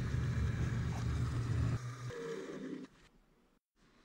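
Benchtop drill press running as it drills a hole in a small brass support bar; the motor's hum and the cutting noise stop about three seconds in.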